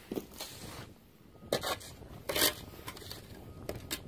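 Handling noise from a gutter trough section turned over in the hand: a few short scrapes and rubs, the loudest just past halfway.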